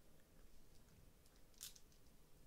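Near silence, with a few faint small clicks about half a second in and a brief faint rub near the end from the plastic joints of a Mafex Daredevil action figure being worked by hand.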